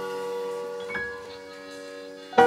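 Live keyboard chord held and slowly dying away, with a single soft chime-like note entering about a second in.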